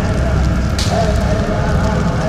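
Loud crackling, rumbling noise with a faint wavering tone held through it, and a brief hiss a little under a second in.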